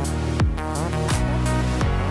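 Background music with a steady beat: deep drum hits about three every two seconds over sustained notes.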